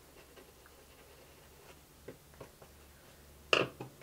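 Quiet handling sounds of paint brushes at a painting table: faint scratches and a few small taps, then one sharp click near the end.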